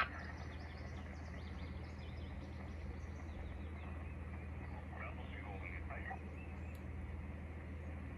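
Faint hiss and a steady low hum from a Xiegu X6100 HF radio's receiver. A weak voice comes through faintly about five to six seconds in, and there are faint high chirps in the first few seconds.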